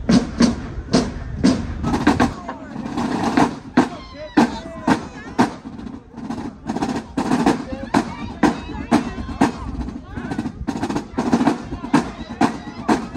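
Marching band drumline playing a cadence, with crash cymbals, snares and bass drums striking together in a steady beat of about two to three hits a second.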